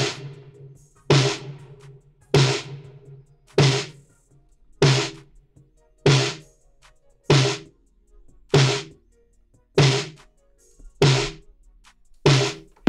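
A programmed snare drum sample on the backbeat, ten hits about 1.2 s apart. Each hit is sent through an EMT 140 plate reverb plugin and leaves a long, bright fading tail.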